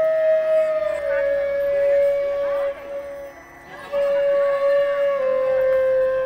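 Flute music playing long held notes: two sustained notes, each stepping down a little in pitch partway through, with a short break between them. Voices sound faintly behind.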